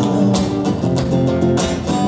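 Acoustic guitar strummed in a steady rhythm, chords ringing, played live.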